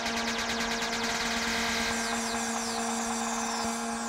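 Techno track in a breakdown with no kick drum: steady held synth tones under a rapid fluttering high-pitched pulse. From about halfway, repeated falling synth sweeps take over the top.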